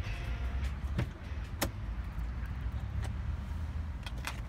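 Car door handle and latch clicking twice, about a second apart, as the driver's door is opened, over a steady low rumble.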